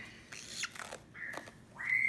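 Green-cheeked conure chick giving faint, short high squeaks, one just past a second in and a rising one near the end, with soft rustling as its leg bandage is handled.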